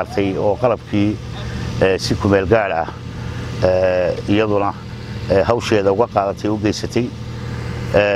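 A man talking in Somali, continuous speech with short pauses, over a steady low hum.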